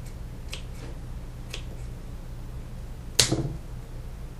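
Scissors snipping through thin autumn olive stems: a few short clicks, faint at first, with one much louder snip about three seconds in. A steady low hum runs underneath.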